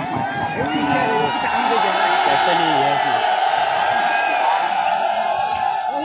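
A large crowd of spectators shouting and cheering, many voices overlapping. It swells into a sustained roar about a second in and holds until near the end.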